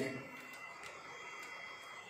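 Quiet background with a faint steady high-pitched whine over low room noise, after a voice trails off at the start.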